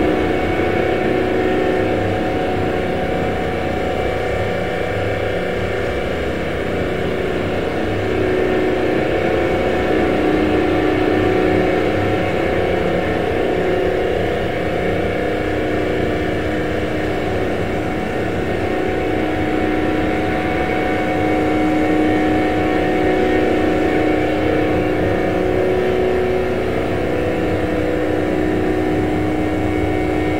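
Drone ambient noise music: a dense, continuous wash of hiss and rumble with several steady held tones layered over it, slowly swelling and easing in level.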